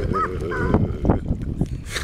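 A woman laughing in short, high-pitched bursts, followed by about a second of short, irregular noises.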